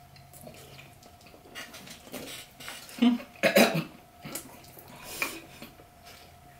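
People chewing mouthfuls of banana, with scattered short mouth and throat noises; the loudest is a pair of brief throaty sounds about three seconds in, with another shortly after five seconds.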